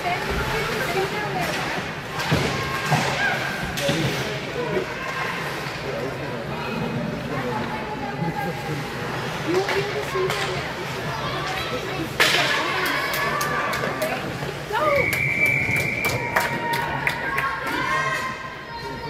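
Ice hockey game heard from rinkside: spectators' voices and several sharp thuds of sticks and puck against the boards. Near the end a long, steady high whistle blows as play stops.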